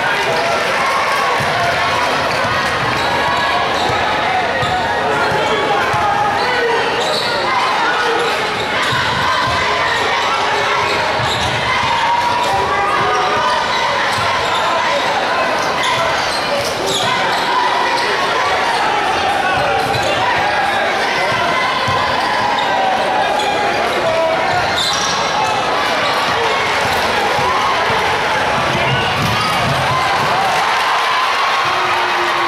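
Basketball dribbled on a hardwood gym floor, heard against the steady chatter and shouting of a crowd in a large indoor arena.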